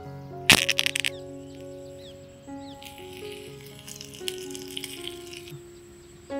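Fresh curry leaves dropped into hot oil in a tiny clay kadai crackle and spatter loudly for about half a second, then a softer sizzle with small pops follows, over background music.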